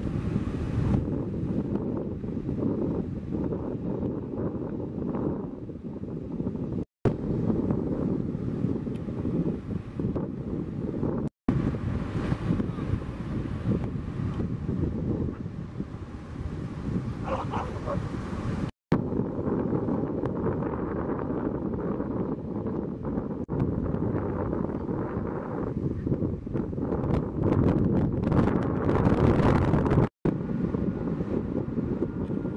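Wind buffeting the camera microphone over the steady wash of breaking ocean surf. The sound cuts out for an instant three times.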